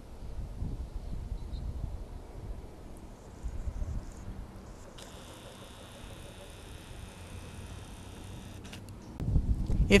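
Wind buffeting the microphone of a handheld camera: a low, uneven rumble that gusts up in the first few seconds and then settles. A faint steady high tone comes in about halfway through.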